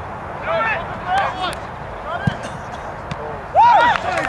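Shouted calls across a soccer field from players and spectators: several short, high calls, then a loud shout near the end. A single thump sounds about two seconds in.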